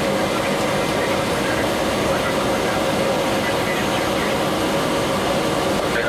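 Small propeller airplane's engines running steadily, heard from inside the cabin as a loud, even drone with a steady hum.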